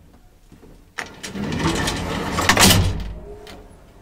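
Old traction elevator starting off: a sharp click about a second in, then a mechanical rumble and rattle that builds for a couple of seconds as the car gets under way, easing to a low steady run near the end.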